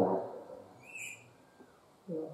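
The last word of a man's speech dying away, then about a second in a single short, faint, high chirp, most likely a small bird.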